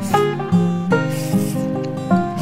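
Background acoustic guitar music, with plucked and strummed notes and a rasping, brushing noise laid over it in places.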